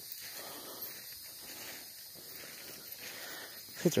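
Faint soft rustling of a person walking on foot through grass and undergrowth, coming in a loose run of soft swells.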